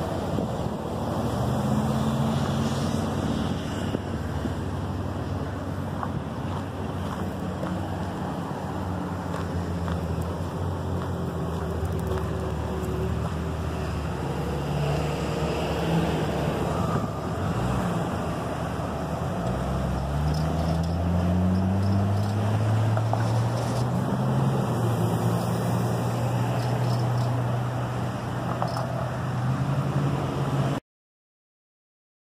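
A 2005 Chrysler Town & Country minivan's 3.8-litre V6 running as the van moves about a gravel lot. Its revs climb in a rising pitch about twenty seconds in, then hold.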